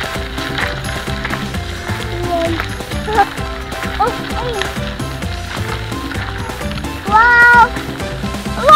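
Music playing steadily throughout, with a short, loud bleat from a penned farm animal near the end.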